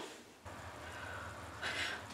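Quiet room tone with a low steady hum that comes in about half a second in, and a short breath-like hiss near the end.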